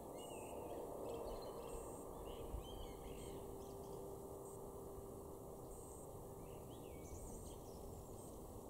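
Male common blackbird (Turdus merula) singing. A run of warbled phrases fills the first three seconds or so, and a shorter phrase comes near the end, rising into higher notes.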